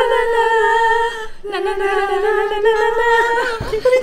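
Women's voices singing two long held notes together without accompaniment, the second a little lower than the first, with a short low bump near the end.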